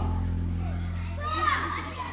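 Children calling and shouting while they play football, the voices rising about a second in, over a steady low hum.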